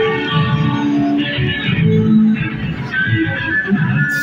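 Live band music: an electric guitar plays held notes over a lower moving line in an instrumental passage without vocals.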